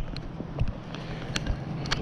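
Handling noise from a phone camera being picked up and turned: a few light clicks and knocks over a steady rumble of wind on the microphone.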